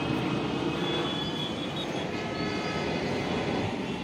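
Steady, even rumble of a distant passing vehicle, with faint high whining tones over it.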